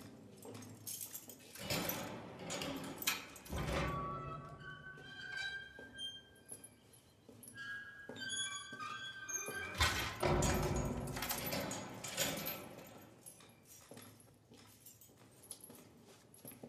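Film soundtrack: a quiet passage of music with held high notes that step in pitch in the middle, between two louder stretches of irregular noise near the start and again about ten seconds in.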